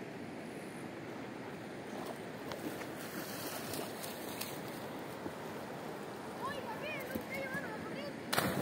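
Steady rush of flowing river water, with a few short high chirps about six to seven seconds in.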